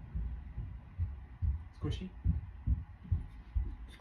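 Dull low thuds repeating about twice a second, with a man softly saying "Squishy?" about two seconds in.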